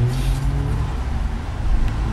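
Car running at low speed, heard from inside the cabin, with a steady low hum through the first second and a short click near the end.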